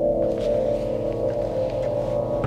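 Ambient background music: a sustained drone of held, bowl-like tones that stays steady throughout.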